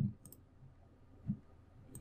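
Faint clicks from a computer mouse, a few short clicks near the start, with one soft low thump about a second in.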